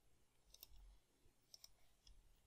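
Near silence with a few faint computer mouse clicks, about half a second in and again about a second and a half in.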